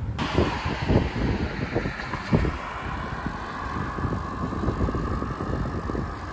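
Outdoor road traffic noise, a steady wash with a slowly falling tone, with wind rumbling on the microphone.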